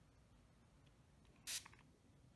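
One quick spritz of water from a small hand-pump spray bottle, a short hiss about one and a half seconds in, wetting Brusho powder on watercolour paper; otherwise near silence.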